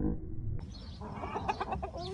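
Sumatra chickens clucking: a quick run of short, repeated clucks beginning about a second in.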